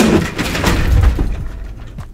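A clattering crash with a heavy thud about a second in, as a person goes down behind the desk and knocks into things.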